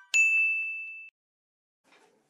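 A notification-bell sound effect: a sharp click followed by a single high ding that rings for about a second and fades out.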